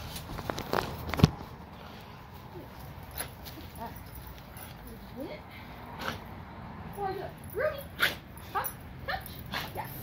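Several dogs whining and yipping: short cries that rise and fall in pitch, starting about halfway through and coming more often near the end. A single sharp knock about a second in.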